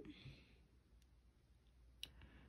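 Near silence: room tone, with a faint click about a second in and another at the end.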